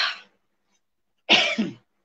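Two short coughs, one at the start and one about a second and a half later.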